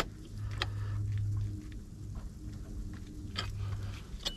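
Wrenches on a metal gas-line flare fitting being tightened: one sharp metallic click at the start, then a few faint clicks, over a low steady hum.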